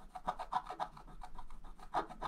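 Wooden scratch stylus scraping the black coating off a scratch-art page in short quick strokes, about five a second.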